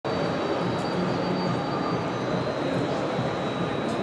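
Steady city-centre street noise: a continuous even wash of distant traffic and town bustle, with a faint high steady whine running through it.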